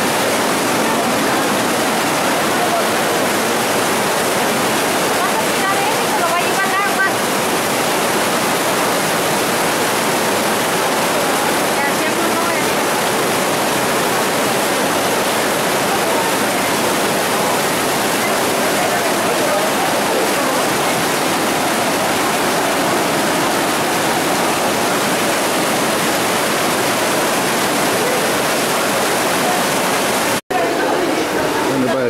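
Heavy downpour with rainwater rushing down a flight of stone steps like a waterfall: a loud, steady rush of water.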